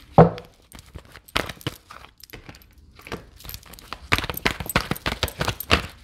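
Tarot cards being shuffled by hand: a string of quick papery taps and slaps, thicker and louder in the second half, with one sharp louder snap just after the start.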